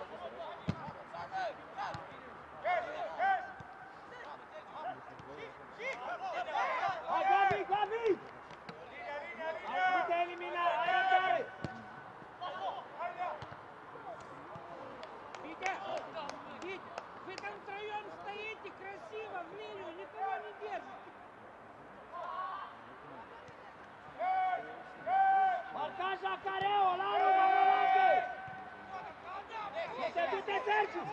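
Men shouting calls to one another across an open football pitch, in bursts that are loudest about a third of the way in and again near the end. A couple of sharp knocks of the ball being struck are heard under the shouting.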